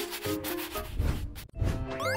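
Toothbrush scrubbing on teeth: a quick run of rhythmic brushing strokes that stops abruptly about one and a half seconds in.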